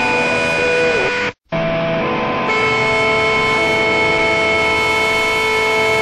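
Hardcore punk recording: distorted electric guitars ring out in long held chords and feedback tones, with no drumming. The sound cuts to silence for a split second about a second and a half in, then a new sustained feedback tone and chord rings on.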